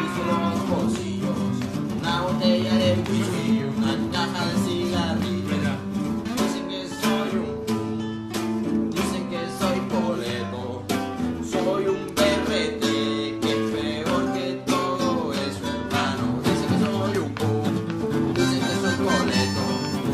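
Instrumental passage of a punk-corrido song: guitars strumming in a steady rhythm, with a harmonica coming in near the end.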